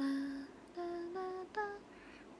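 A young woman humming a slow tune with her mouth closed: a few held notes that step upward in pitch, with short breaks between them.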